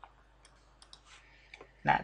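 A few faint, sharp clicks scattered over a quiet background, followed near the end by one short spoken syllable.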